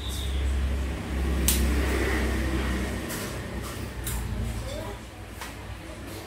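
Cordless drills being handled on a tabletop: a low rumble of handling noise with a few sharp knocks and clicks as the tools are picked up and set down.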